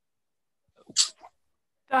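A brief, breathy vocal exclamation from one person, a short hissing burst about a second in after a moment of silence, just before more speech starts near the end.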